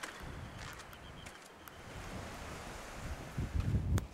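Wind buffeting the microphone: a low rumble that gusts stronger near the end, over a steady faint hiss.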